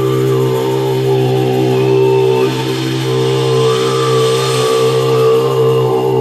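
Live music: a steady, chant-like low vocal drone held without a beat, with a thin high tone sliding up and down above it.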